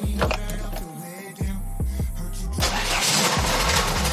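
An Audi 100 C3's 2.3-litre five-cylinder engine being cranked by the starter, stopping briefly about a second in, then cranked again until it catches and settles into running about two and a half seconds in, a hard start that took three tries. Music plays underneath.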